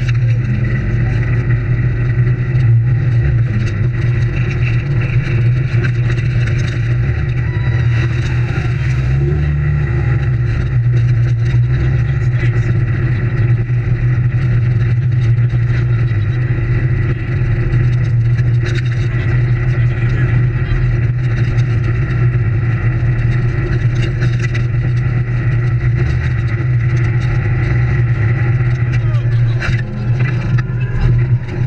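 Off-road vehicle engine running steadily, with a brief rise in engine speed about eight to ten seconds in.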